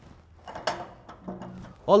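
Light clatter of kitchenware being handled, with one sharp knock a little over half a second in and a few fainter ones after it.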